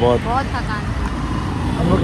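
Road traffic running past, a steady low rumble of vehicles, with a voice talking briefly at the start.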